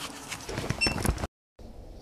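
Scuffling and small knocks as a Yorkshire Terrier–Shih Tzu puppy mouths and play-bites a hand, with a brief high squeak; the sound cuts off dead just over a second in, then faint room tone follows.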